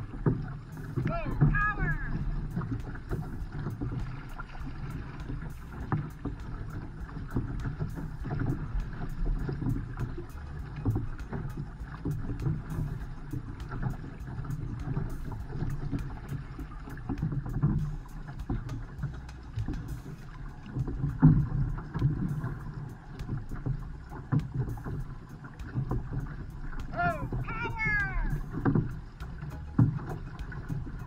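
Outrigger canoes paddled hard side by side: steady splashing and rushing water from the paddles and hulls, with wind on the microphone. A brief call rings out about a second in and again near the end.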